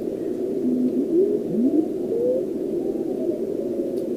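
Receiver audio from a homebrew SST 20-metre CW transceiver being tuned across a near-empty band: a narrow, crystal-filtered band hiss with faint whistling beat notes that glide upward in pitch as the dial turns, played through an external amplifier's speaker.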